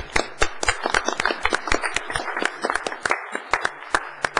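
A small group applauding, the individual hand claps distinct.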